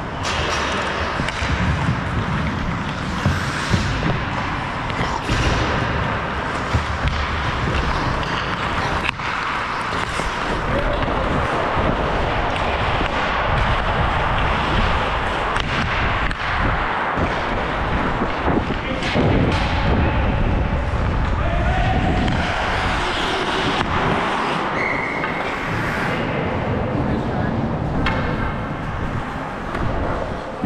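Ice hockey play heard from a skater's helmet: skate blades on the ice and a rumble of wind on the microphone, with sharp knocks of sticks and puck now and then.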